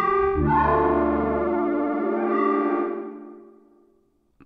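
Xpand!2 software synthesizer playing its 'Tire Choir' soft pad preset: sustained choir-like pad chords, with a change of chord just under half a second in. The last chord fades away over the final second.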